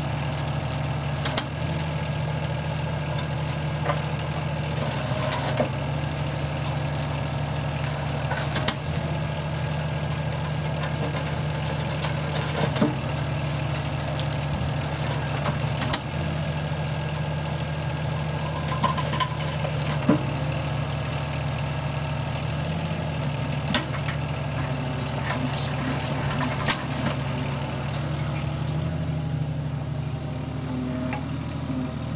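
Excavator diesel engine running steadily, with irregular sharp knocks and cracks from concrete rubble being broken in a Baughans 18-inch hydraulic bucket crusher.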